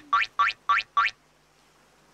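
Comedy sound effect: a quick run of five rising, boing-like pitch sweeps, about four a second, that stops a little over a second in.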